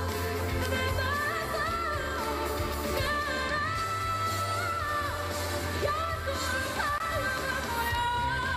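A female singer's live pop vocal with band accompaniment, holding long sung notes over a steady bass line.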